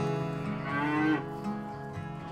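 A cow mooing once, one call of about a second, over background acoustic guitar music.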